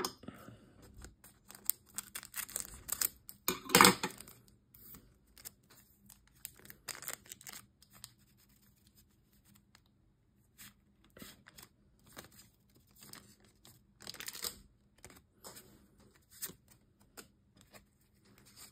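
Foil booster-pack wrappers being torn open and crinkled, the loudest tear about four seconds in, followed by scattered softer rustling as the packs are handled.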